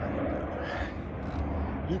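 A steady low outdoor rumble with faint voice sounds, and the singing of the first line just starting at the very end.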